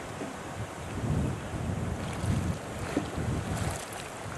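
Wind buffeting the microphone outdoors, with water sloshing and lapping as a kayak slides off into floodwater and is paddled away.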